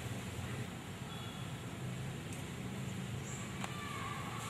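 Steady background hum and hiss with no distinct events: ambient room tone while nobody moves or speaks.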